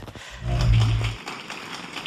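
A short, deep boom-like transition sound effect lasting under a second, about half a second in, then faint hiss.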